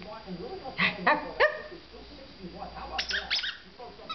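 A Yorkiepoo puppy gives three short, high barks about a second in, falling in pitch, then a quick run of high yips near the end as it plays with a toy.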